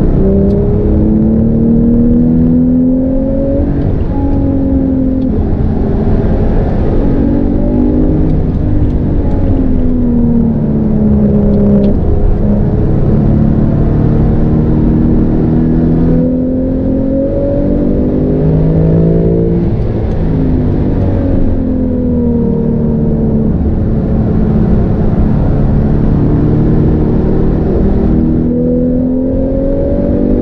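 Porsche 911 GTS twin-turbocharged 3.0-litre flat-six, heard from inside the cabin at speed on track. The engine pitch climbs as it accelerates and drops back at each upshift. Several times the pitch falls away steadily as the car slows for corners.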